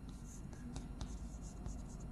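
Chalk writing on a blackboard: faint scratching strokes, with a couple of sharp taps about a second in.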